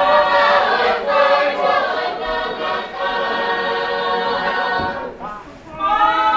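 Choir singing unaccompanied in held chords, with a short break about five seconds in before the next phrase begins.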